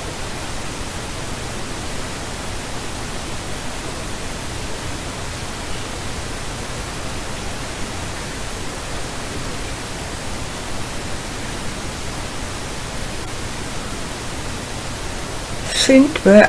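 Afterlight Box ghost-box software putting out a steady, even hiss of static-like noise, the noise in which answers from spirits are listened for.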